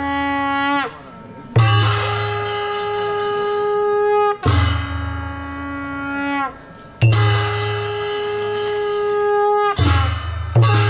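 Traditional Newar ritual music: a wind instrument plays long held notes in phrases of about three seconds, each ending with a drop in pitch, with short breaks between them. Drums sound low underneath.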